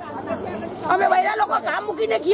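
Women's voices talking, several at once: speech and chatter.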